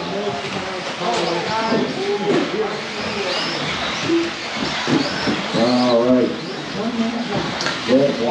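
Electric 2wd RC buggies with 17.5-turn brushless motors racing around an indoor track, their motors whining up and down in pitch, under voices.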